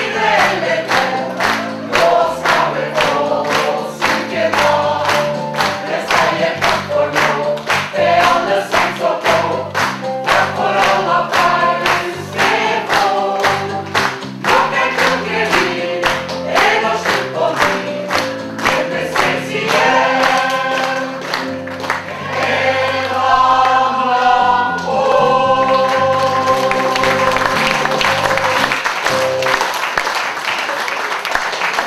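Stage cast singing together as a choir over musical accompaniment with a steady beat of about two a second. Near the end the song closes on long held notes, and applause begins.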